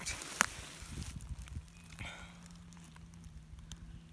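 Footsteps and rustling in dry leaf litter, with one sharp click about half a second in; after about a second it quietens, leaving a faint steady low hum.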